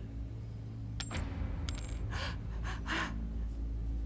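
A light metallic clink about a second in, a faint high ringing clink shortly after, then a few soft breaths, over a low steady hum.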